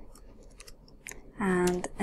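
Computer keyboard keys clicking in a few scattered keystrokes as code is typed, then a woman's voice starts speaking near the end.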